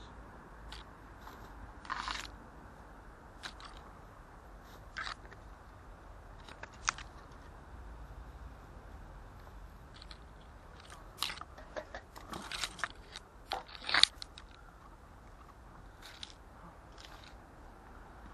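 Scattered, irregular crunches and clicks over a faint low background, with a busier, louder cluster about two thirds of the way in.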